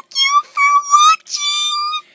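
A girl singing or squealing in a very high voice: a few short notes, then one long held note in the second half.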